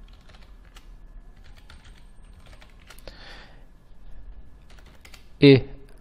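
Computer keyboard keystrokes, faint and irregular: an encryption password being typed twice at a terminal prompt, then a short command entered.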